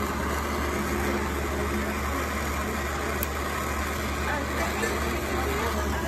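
Jeweler's gas torch burning with a steady rushing hiss as its blue flame heats a lump of 22k gold on a charcoal block.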